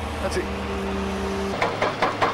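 Heavy excavator engine idling, under a man's held hum for about a second. About one and a half seconds in, the idle gives way to a run of crashes and clatters as concrete slabs break and fall.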